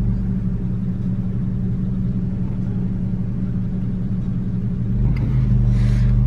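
Car engine running, heard from inside the cabin as a steady low hum over road rumble. It grows louder about five seconds in as the car pulls away.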